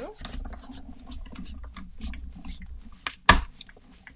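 Manual die-cutting and embossing machine pressing a plate sandwich with a die and cardstock through its rollers: a low grinding rumble with fine clicking, then a single loud clack a little after three seconds.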